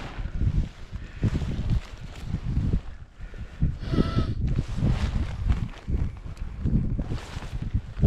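Wind gusting on a helmet camera's microphone in irregular low rumbles, with a short high tone about halfway through.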